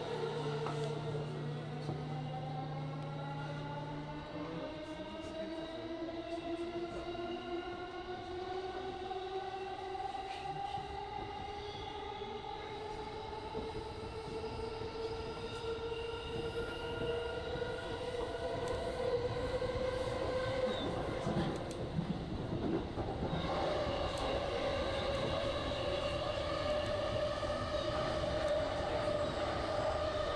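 JR Chuo Line electric train under way: its inverter and traction motors give a whine of several tones that rises steadily in pitch as the train gathers speed, over the rumble of wheels on rail. The tone breaks briefly about two-thirds of the way through, then carries on higher.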